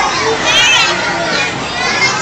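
A young child's high-pitched voice, babbling and squealing with rising and falling pitch, with other people's voices in the background.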